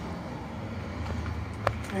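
Steady low outdoor rumble, with one short sharp click near the end.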